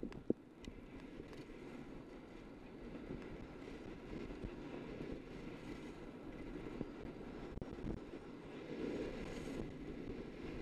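Skis sliding and turning on groomed, packed snow at speed: a steady rushing noise that swells a little near the end, with one sharp click about a third of a second in.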